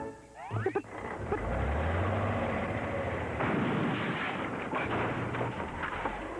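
Cartoon sound effects of a straw house being demolished: a brief sliding sound, then a long steady mechanical rumble and clatter, with background music.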